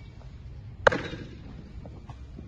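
A single sharp click or knock a little under a second in, over a faint low background hum.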